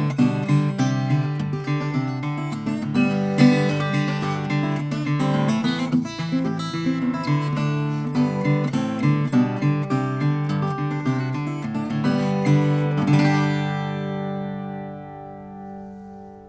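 Santa Cruz Firefly three-quarter-size acoustic guitar with a sinker redwood top and Brazilian rosewood back and sides, played solo: a busy passage of picked notes and chords, ending about three-quarters of the way through on a chord that rings on and slowly fades.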